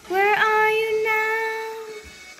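A young girl singing one long held note that scoops up in pitch at its start, then holds steady and fades away near the end, over quieter background music.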